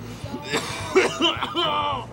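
A man's hoarse, raspy voice making short, rough, cough-like sounds, then holding a note near the end, with a rock song underneath.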